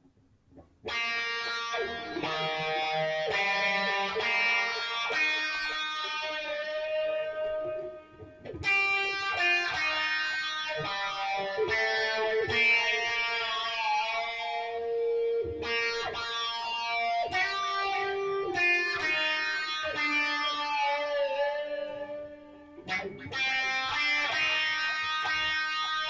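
A homemade gas-can guitar played as a demo: strummed chords and single notes that ring on, with a few bent notes. The playing starts about a second in and has short pauses about a third of the way through and near the end.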